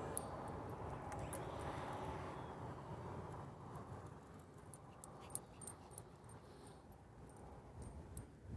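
Faint motor and propeller hum of a model Carbon Cub airplane in flight, fading away over the first few seconds as it flies off.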